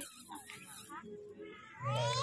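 People talking, with a quieter pause in the middle. A loud, very high-pitched voice, like a child's, starts just before the end.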